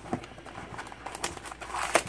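Light handling of a cardboard trading-card box and its wrapped card packs: a few soft taps and rustles, with a sharper click near the end.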